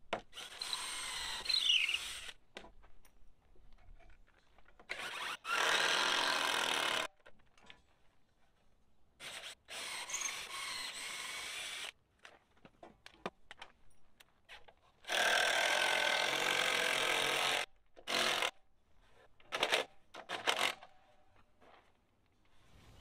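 Power drill boring a long bit through a red cedar corner brace into the post, in bursts of about two seconds with short pauses between them and shorter bursts near the end.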